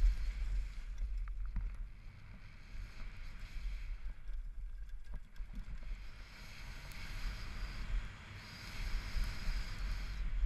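Wind buffeting the microphone of a body-mounted action camera, with mountain-bike tyres running over a packed dirt trail at speed on a downhill descent. A few brief clicks and rattles from the bike come about a second in.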